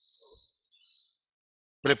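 A thin, steady high-pitched tone that stops a little over a second in.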